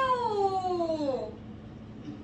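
A single drawn-out vocal cry that slides steadily down in pitch and fades out about a second and a half in.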